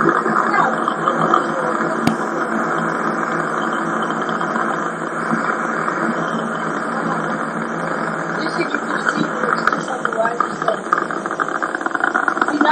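Space Shuttle Columbia's rocket engines during ascent, a steady, even rushing noise with no deep bass, heard through a TV speaker and recorded on an audio cassette.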